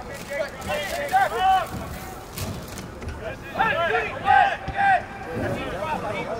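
Raised voices shouting calls across a soccer field: a couple of shouts about a second in and a longer run of loud shouts from about three and a half to five seconds, over faint crowd chatter.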